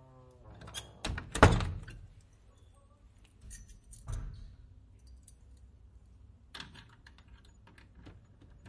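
A door thudding shut about a second and a half in, after a brief pitched tone at the very start, followed by scattered clicks and rattles.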